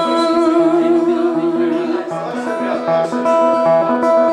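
A woman singing a long held note while playing a steel-string acoustic guitar; the voice drops away about halfway, leaving the guitar's repeated notes.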